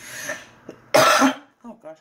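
A woman coughs once, loudly, about a second in, after a breathy intake of air.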